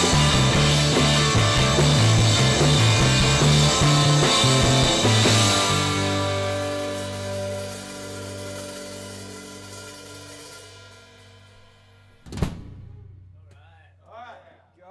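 Live rock band of drum kit, bass and electric guitar playing the last bars of a song. About five seconds in, they stop on a final chord that rings on and fades away over several seconds. Near the end a single sharp knock sounds.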